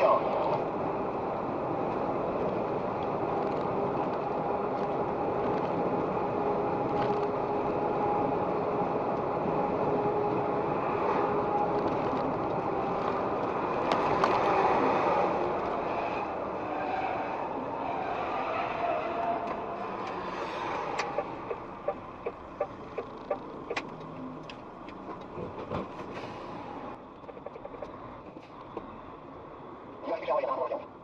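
Steady engine and road drone inside a moving vehicle's cab at highway speed, with faint steady tones. About two-thirds through the drone drops in level and a run of regular light clicks begins.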